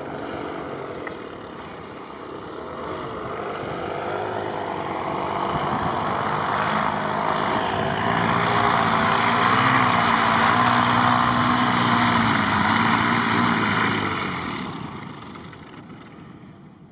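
Paramotor engine and propeller running as the powered paraglider flies in low toward the microphone, growing louder to a peak over the middle and dying away near the end as it lands.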